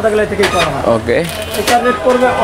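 A man talking: speech only.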